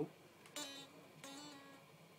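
Ibanez Gio electric guitar: two single notes picked about three-quarters of a second apart, each ringing and fading.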